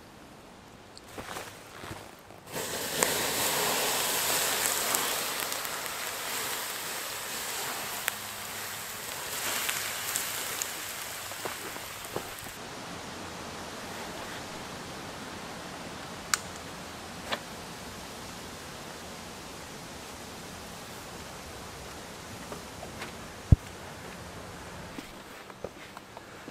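Steady rushing outdoor noise that starts suddenly a few seconds in after a quiet opening. It is loudest for the next ten seconds or so, then softer, with a few faint clicks.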